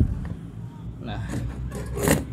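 A steady low hum, with one short spoken word ("nah") about a second in.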